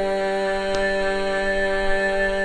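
Carnatic vocal music: a woman holds one long, steady note over a tanpura drone.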